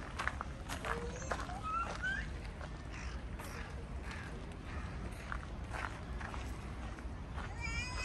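Outdoor garden ambience while walking: footsteps clicking irregularly on a path over a low steady rumble, with faint voices of other visitors and a couple of short rising bird calls a little after a second in.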